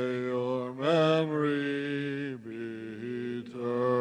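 A man's voice chanting Byzantine church chant, holding long notes that slide between pitches, with a brief break a little past the middle before the next phrase.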